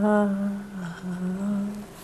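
A woman's voice humming one long held note, nearly level in pitch with slight dips, that stops shortly before the end.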